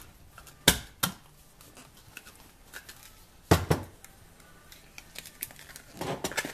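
Knocks and clicks of a 4-inch PVC pipe drum and its flexible rubber end cap being handled on a workbench. There are sharp knocks about two-thirds of a second and a second in, two more around three and a half seconds, then lighter ticks.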